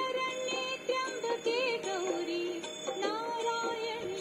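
A song playing: a high singing voice carries a wavering, ornamented melody over instrumental accompaniment.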